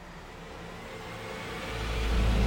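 A trailer sound-effect riser: a rush of noise like air rushing past swells steadily louder, and a deep rumble comes in near the end as it builds toward a hit.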